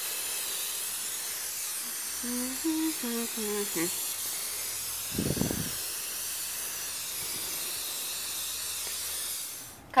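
Aerosol waterproofing spray hissing out of the can onto canvas sneakers, one long continuous spray that stops just before the end. A brief dull thump about halfway through.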